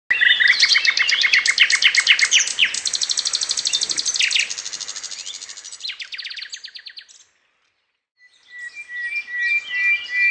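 Birds chirping in fast runs of short high notes, several to a second. The chirping fades out about seven seconds in, and after a second of silence it starts again.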